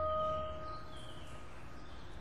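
A steady held tone with its octave above, dying away within the first half second, then faint room noise with a low hum.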